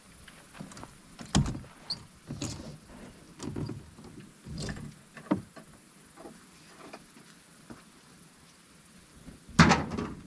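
Ratchet tie-down strap being released and worked loose from the boat: a series of separate clicks and clunks over the first five seconds, then a louder clunk near the end.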